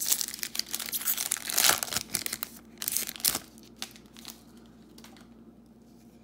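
Foil trading-card pack wrapper crinkling as it is torn open and pulled apart by hand. The crackling is dense for about three seconds, then thins to a few clicks and dies away.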